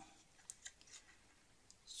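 Small craft scissors snipping red cardstock: a few faint, short snips as a folded paper flap is trimmed.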